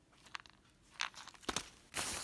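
Faint handling noise of a hand slipping a small zippered pill case into a fabric tote bag and rummaging inside it: soft rustles with a couple of sharp clicks, the clearest about one and a half seconds in.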